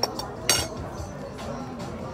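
Tableware clinking twice, sharply, once at the start and again about half a second later, over background music.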